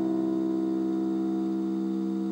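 A chord held on an electronic stage keyboard in a piano sound, its notes ringing on and slowly fading with no new notes struck.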